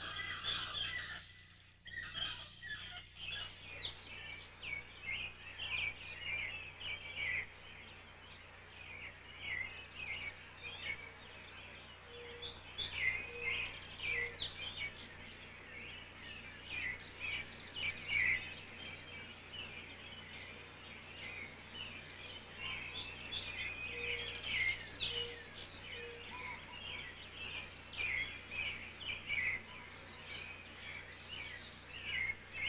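Small songbirds chirping and twittering: many short high chirps overlapping without a break.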